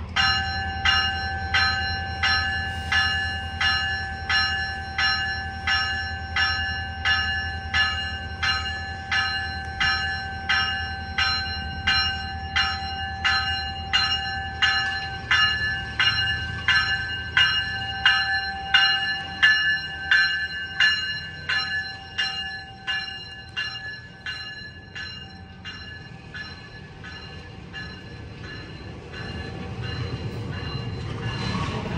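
A GO Transit train's bell ringing steadily, about three strikes every two seconds, as the cab car moves off past the platform. The strikes fade and stop about 26 s in, leaving the low rumble of the moving train.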